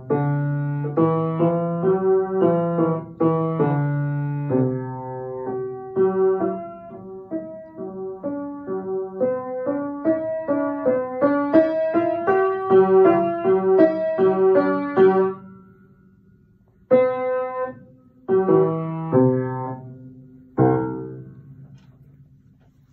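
Upright piano played by a child: a lively, continuous run of notes, then a short pause and four separate ringing chords near the end that close the piece.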